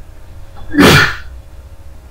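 A man lets out a single loud, sharp burst of breath, a cough or sneeze-like blast about half a second long, close to a second in.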